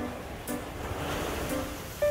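Surf washing onto a sandy beach, the rush of water swelling about a second in, with some wind on the microphone. Soft plucked-string background music plays over it.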